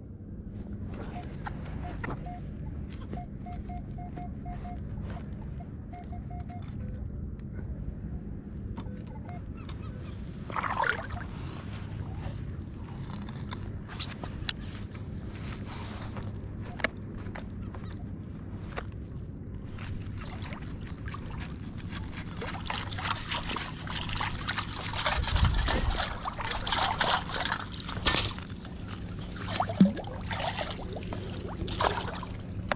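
Underwater metal detector sweeping in shallow water, giving a run of short, evenly spaced beeps at one pitch in the first few seconds. Later a long-handled sand scoop digs in, and the water sloshes and splashes, loudest in the last several seconds.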